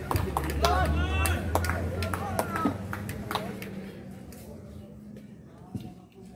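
Men's voices calling out across an outdoor cricket field, with a few short sharp snaps and a low steady hum. Growing quieter in the second half.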